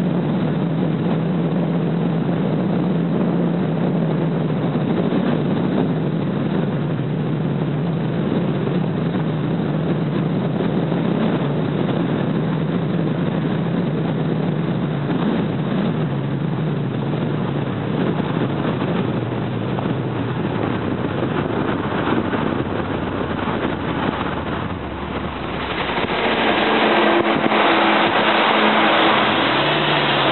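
A car driving along a road from inside: steady engine hum and road noise. Near the end the noise gets louder and brighter.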